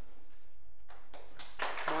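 Applause starting: a few scattered hand claps about a second in, thickening into steady clapping near the end.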